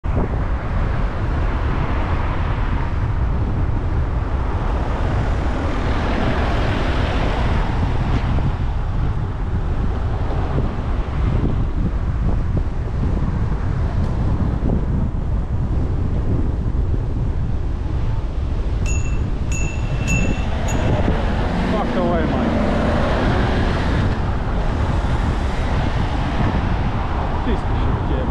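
Steady wind rush and road noise on a bicycle-mounted camera while riding, with passing traffic. About two-thirds through come four short high chirps, and near the end a van's engine grows louder as it draws alongside to overtake.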